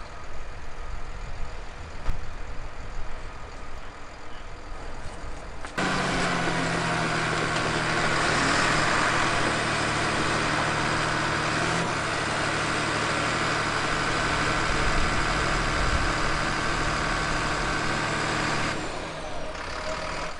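Crawler dozer's diesel engine running close by as the machine moves slowly on its tracks, starting suddenly about six seconds in and easing off near the end, with a change in the engine note about halfway through. Before it there is only a low outdoor rumble.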